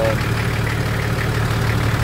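Nissan Safari engine idling with a steady low hum.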